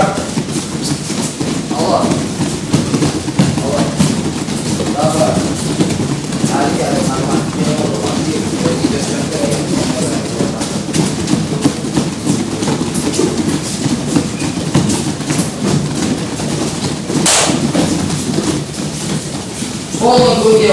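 Many children running barefoot on judo tatami: a steady stream of soft footfalls on the mats, with faint children's voices here and there and one brief sharp noise a few seconds before the end.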